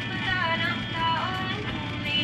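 A song with a singing voice plays over a steady low hum.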